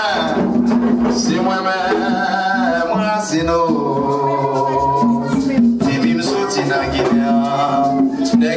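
Haitian Vodou ceremonial song: a voice singing with a wavering pitch over hand drums and a shaken rattle.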